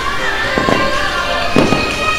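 Fireworks going off twice, about half a second and a second and a half in, over loud music.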